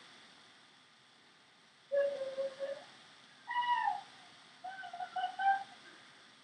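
Three short wordless vocal sounds: a held note, then a falling note, then a quick run of short notes.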